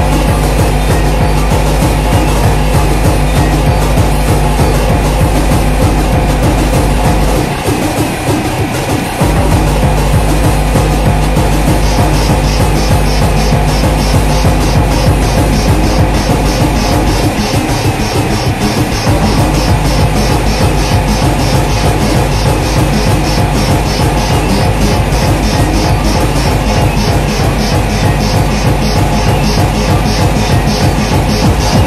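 Techno DJ mix: a steady kick drum under layered synth loops. The kick and bass drop out twice for about two seconds each, and a crisp high hi-hat pattern comes in about twelve seconds in.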